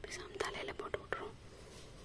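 Soft whispering close to the microphone, with a few faint clicks in the first second or so.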